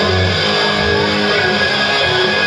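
Live hard rock band playing loudly and steadily, with electric guitars and bass over drums, recorded from the audience in a club.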